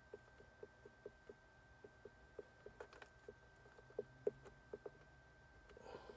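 Faint, quick clicking, about four clicks a second with a few louder ticks, from the keys of a handheld GM Tech 2 clone scan tool as its data list is scrolled.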